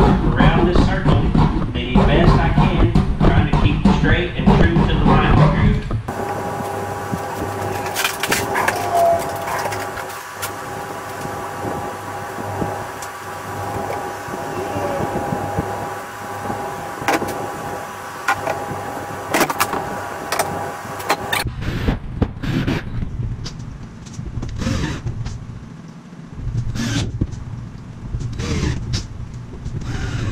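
A saw cutting a six-inch hole through a plastic kayak hull for the first few seconds. Then about fifteen seconds of background music, followed by scattered light knocks and clicks of parts being handled.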